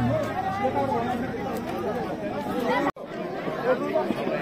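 Crowd chatter: many people talking at once in an overlapping babble, no single voice standing out. The sound cuts out briefly about three seconds in.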